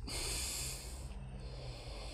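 A person breathing out, a soft hiss lasting about a second before fading to faint background noise.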